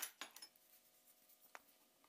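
Steel drill bits clinking together as they are handled on a board: a few light clinks in the first half-second, then near silence with one faint tick about one and a half seconds in.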